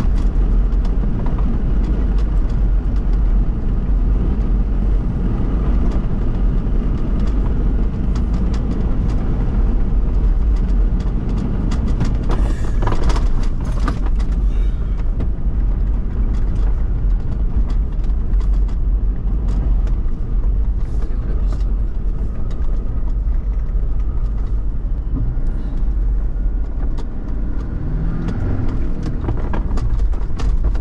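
Toyota VX 4x4 driving off-road over a sandy, stony desert track: a steady low rumble of engine and tyres, with frequent small clicks and knocks from stones and rattles.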